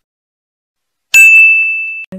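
A single bright 'ding' sound effect for the notification bell of a subscribe animation. It strikes about a second in and rings on as one high tone that slowly fades.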